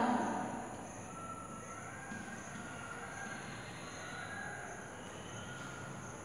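Chalk writing on a blackboard, faint against a steady low background, with a few brief faint high-pitched tones.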